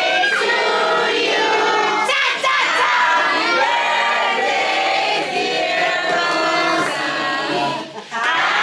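A group of people singing a birthday song together, several voices at once, with a short break near the end.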